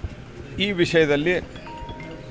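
A man speaking briefly, then near the end a short electronic beep: one steady, even tone.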